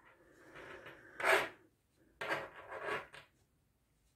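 Soft rubbing and rustling of hands working fluffy pom-pom yarn on metal knitting needles, in a few short bursts.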